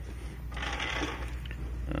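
Rustling and scraping as a plastic-bodied RC truck is handled and moved by hand, over a steady low hum.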